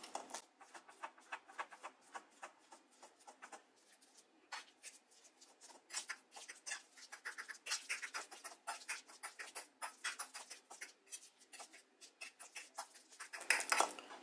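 A metal fork mashing ripe bananas on a ceramic plate: faint, irregular clicks and scrapes of the tines against the plate, sparse at first and quicker from about six seconds in.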